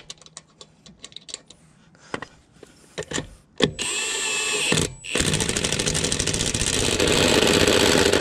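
Cordless impact wrench on a car's lug nut: faint clicks as the nut is started, then about a second of the motor spinning with a whine, and from about five seconds in, loud rapid steady hammering as the nut is driven down to draw a new wheel stud into the hub.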